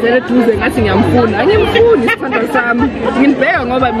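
Women talking: conversational chatter with no other clear sound.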